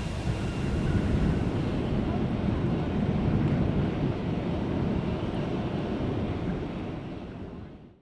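Steady low outdoor rumble with wind buffeting the microphone beside a parked airliner, fading out at the very end.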